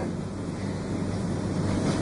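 Steady room noise: an even hiss with a low hum underneath and no distinct event.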